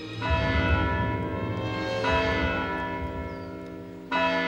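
Church bells ringing, struck about every two seconds, each stroke ringing on and slowly fading.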